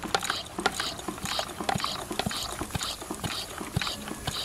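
Hand pump on a portable shower's water tank being worked up and down in a steady rhythm, each stroke a short hiss with clicks, building pressure in the tank to feed the shower head.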